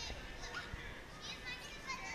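Young children's high-pitched voices in short calls and chatter over a low murmur of people talking.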